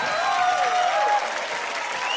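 Studio audience applauding, with cheering voices rising and falling over the clapping.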